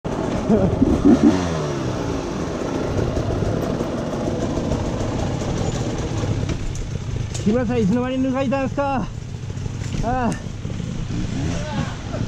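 Off-road motorcycle engine revving up and down sharply about a second in, then running steadily under load. A voice breaks in with short bursts in the second half.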